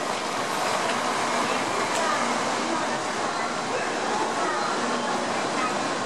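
Shinkansen bullet train pulling in alongside the platform, a steady rush of rolling and air noise, with people's voices on the platform.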